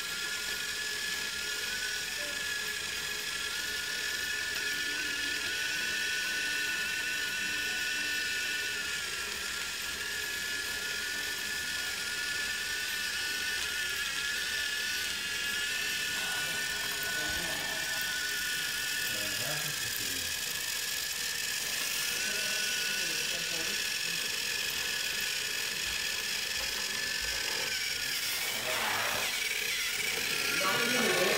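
Small electric motor of a BRIO battery-powered toy train whining steadily as the train runs along wooden track.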